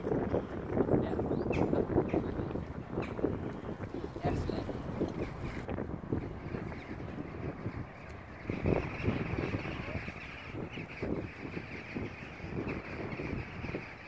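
Wind buffeting the microphone in uneven gusts, with a steadier higher hiss joining a little past halfway.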